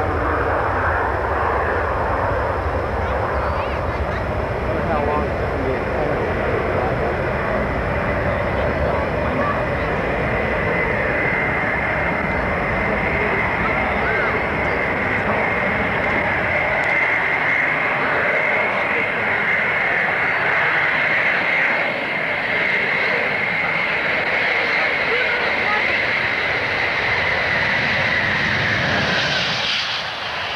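Concorde's four Olympus 593 turbojets on landing approach: a continuous loud rushing jet noise with a high, steady whine that comes in about ten seconds in and dips slightly in pitch near the end.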